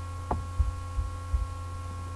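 Steady electrical mains hum on the voiceover recording, with a sharp click about a third of a second in and a few short, soft low thumps.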